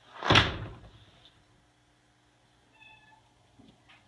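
A loud thump about a third of a second in, then a brief, faint meow from a domestic cat about three seconds in.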